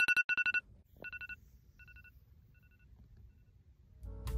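Phone alarm tone going off: rapid beeping pulses in short bursts, loud at first and fading away over about three seconds.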